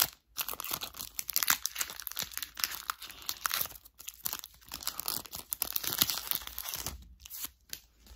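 Pokémon TCG booster pack's foil wrapper being torn open and crinkled in the hands: a run of crackling tears and crinkles with a short lull about four seconds in, dying away near the end.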